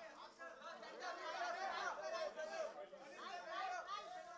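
Faint, indistinct chatter of several voices from a crowd of onlookers and photographers, with no single voice standing out.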